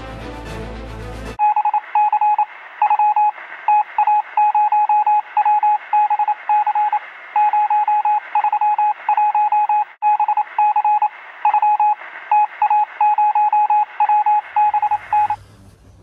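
Morse code: a single steady beep tone keyed on and off in irregular short and long elements, thin and band-limited like a radio or telephone line. A short tail of music ends just over a second in, and the beeping stops near the end.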